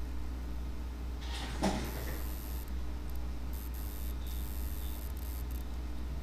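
Steady low hum and hiss of a desk microphone's room tone, with a brief rustle ending in a single sharp click about one and a half seconds in.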